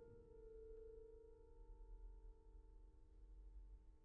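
Grand piano: a quiet chord struck right at the start and left to ring, slowly fading away.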